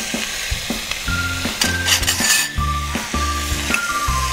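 Chicken and vegetables sizzling in a stainless steel pot on a stove, under background music with a repeating bass line.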